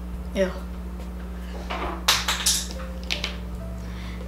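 A few brief clatters and rustles of plastic makeup tubes being handled and set down, about halfway through, over a steady low hum.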